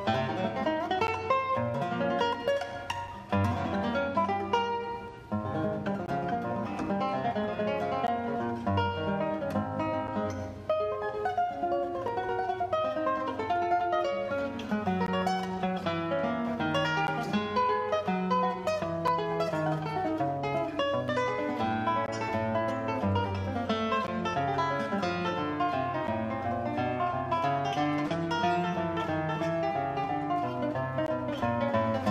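Solo classical guitar played fingerstyle: a continuous run of plucked nylon-string notes over a moving bass line, with two short breaks a few seconds in.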